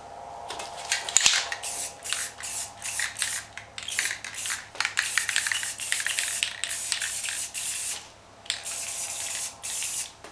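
Aerosol spray-paint can spraying black paint in many short bursts, followed by a longer steady hiss near the end.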